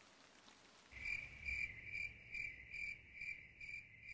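Faint cricket chirping in an even rhythm, about two chirps a second, starting about a second in.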